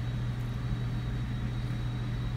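Steady low hum of room tone, with a faint thin high tone above it.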